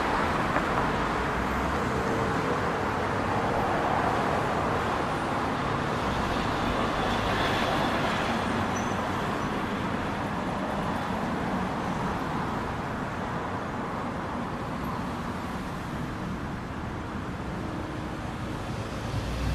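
Steady city street traffic noise, an even wash of road sound that eases slightly in level over the stretch.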